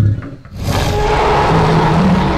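A low thud, then from about half a second in a loud, rough dinosaur roar sound effect that carries on to the end.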